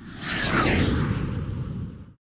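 Whoosh sound effect for a logo reveal: a high sweep falling in pitch over about the first second, over a dense low rumble, cutting off abruptly at the end.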